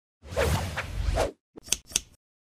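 Logo-intro sound effect: a swoosh lasting about a second, followed near the end by two quick, sharp hits.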